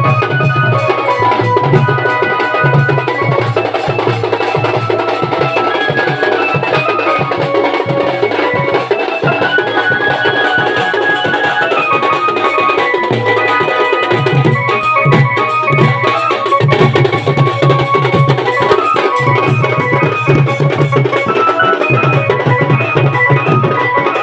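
Sambalpuri band music: drums beating a steady rhythm under a melody of held notes.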